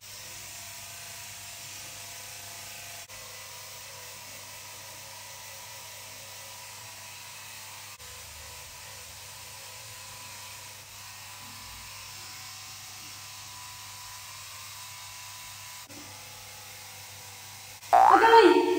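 Braun face epilator's small motor running steadily with a high-pitched whine while its rotating head plucks facial hair; it starts abruptly.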